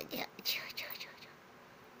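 Soft breathy whispering from a person talking quietly to the pets, a few short hushed sounds in the first second, then quiet.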